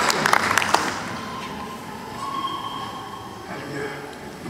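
Applause from a gathering, fading out about a second in, then quieter room sound with faint voices.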